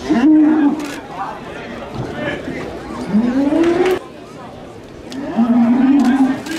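Men's long, drawn-out shouted calls in a bullring, calling the young Camargue bull to draw its charge. There are three calls: one at the start, a second about three seconds in that rises in pitch, and a third near the end.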